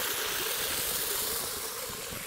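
Water from a pump outlet rushing down a concrete irrigation channel: a steady rush of water that eases slightly near the end.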